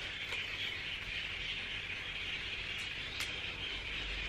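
A steady high-pitched background hiss with a few faint clicks.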